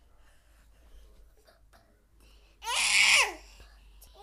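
A young child's loud, high-pitched shriek lasting about half a second, a little over halfway through, dropping in pitch at its end; before it only faint room sounds.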